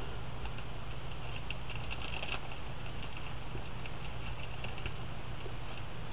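Faint crackling and crinkling of an ostomy seal strip and its peel-off backing being handled, thickest in the first couple of seconds, over a steady low electrical hum.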